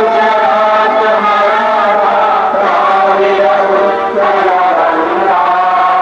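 Many voices chanting a song in unison with musical accompaniment, the notes long and held, moving slowly in pitch.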